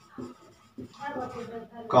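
Marker pen writing on a whiteboard in short strokes, with a man's voice speaking softly in the second half.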